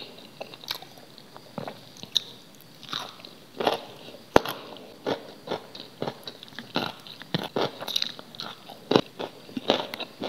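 Raw carrot crunched and chewed close to the microphone: a run of short, crisp crunches, coming closer together in the second half, with one sharp snap about four and a half seconds in.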